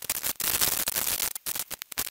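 Harsh static hiss across the whole range that starts abruptly and drops out briefly several times: a digital audio glitch.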